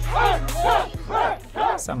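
A racing team's crew cheering and shouting in short repeated calls, about two a second, over a background music track whose steady bass fades out about a second in. A man's narration begins at the very end.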